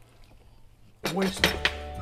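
Faint light scraping and clinking of a spatula in a stainless steel frying pan of scrambled eggs, then a man's voice takes over about a second in.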